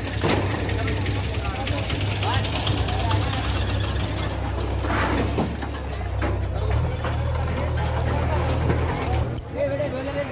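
A vehicle engine idling steadily under voices, with its note shifting about seven seconds in and cutting out near the end. A few sharp knocks are heard over it.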